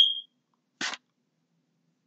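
A single short, high-pitched beep right at the start, then a brief soft puff of noise just before a second in.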